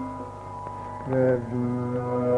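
Carnatic classical music in raga Varali: a long held note fades out, and another sustained note enters about a second in, over a steady drone.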